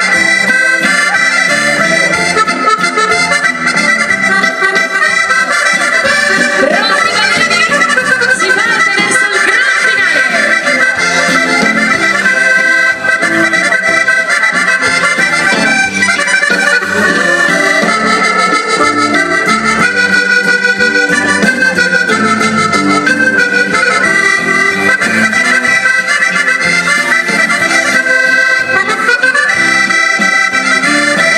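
Live Italian dance-band music led by an accordion, with electric guitars and drums, playing steadily and loudly.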